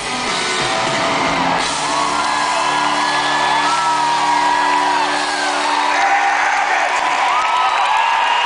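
Live country band playing through an arena PA, with a chord held in the middle, and crowd members whooping and yelling over the music.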